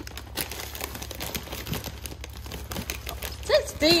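Plastic packaging of frozen food crinkling and rustling in irregular crackles as bags and boxes are handled and shifted in a chest freezer.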